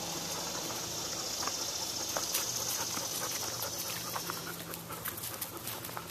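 A dog panting near the microphone, with scattered light clicks and rustles.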